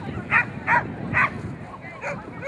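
A dog barking three times in quick succession, the barks loud and about half a second apart.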